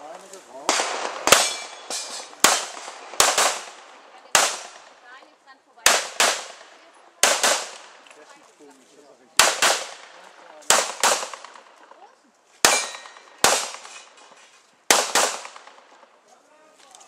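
A competitor fires a pistol through an IPSC stage: about twenty shots, mostly in quick pairs, with a pair every second or two. Each shot carries a short echo.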